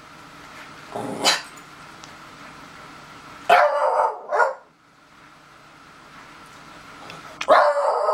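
Beagle barking in short, loud bays: a smaller bark about a second in, a pair of loud ones around the middle, and another starting near the end.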